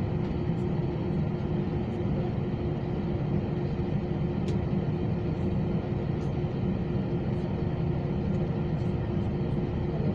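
Cabin noise inside an Airbus A320-232 standing on the ground with its IAE V2500 engines idling: a steady low rumble with a constant hum over it.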